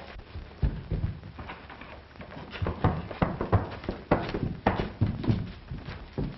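A horse's hooves clopping in uneven steps as it is led along, the knocks coming thicker from about two and a half seconds in.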